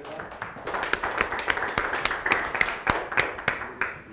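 A small audience applauding: dense, irregular hand claps that die away near the end.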